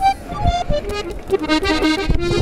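Accordion playing a short melodic run of quick notes, each note steady in pitch with a reedy, overtone-rich tone.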